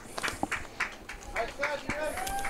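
Faint, distant voices calling across a softball field, with scattered light clicks and taps close to the microphone.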